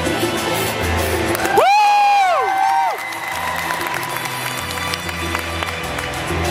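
Figure-skating program music playing in an ice rink, with several spectators whooping and cheering loudly for about a second and a half, starting about a second and a half in.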